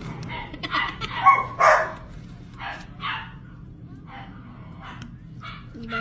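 A dog barking over and over in short barks, loudest between one and two seconds in.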